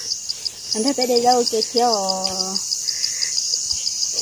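A chirping insect calls in a fast, even pulse of about seven high chirps a second, with a steady high hiss behind it.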